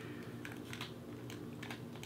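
Light plastic clicks and fiddling as a silicone grip cap is pushed onto a Nintendo Switch Joy-Con thumbstick, several small irregular clicks.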